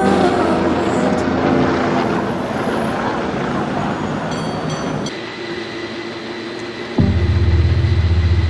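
Background music fading out, then street noise of a San Francisco cable car running on its rails among traffic. A loud low rumble starts suddenly near the end.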